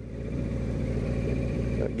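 Honda CBR600F1 sport bike's inline-four engine running under way, heard from a helmet camera with wind hiss over it. It grows louder in the first half second and then holds steady.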